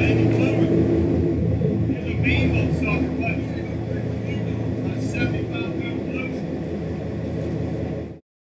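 Boat engine running steadily, with indistinct voices on deck now and then.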